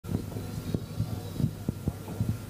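Steady low electrical hum from a stage sound system, with about six dull, irregular low thumps.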